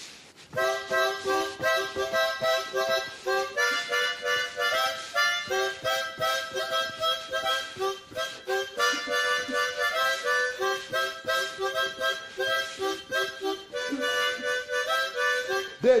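Harmonica playing a quick, rhythmic tune in chords, starting about half a second in.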